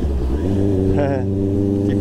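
Honda CBR 650R's inline-four engine running at a steady low rpm while the motorcycle rolls slowly along. A short voice sound comes about a second in.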